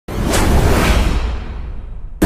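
A whoosh sound effect over a deep low rumble, starting suddenly and fading out over about two seconds, as an intro title sting.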